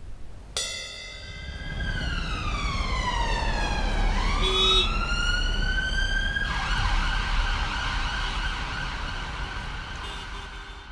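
An emergency-vehicle siren wailing, its pitch sliding slowly down for about three seconds and then back up, over a low traffic rumble. A short beep sounds in the middle, and a hiss joins about two-thirds of the way through.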